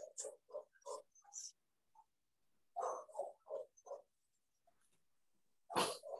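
An animal's short, repeated calls in quick runs of four or five, faint and coming through an online video call's audio.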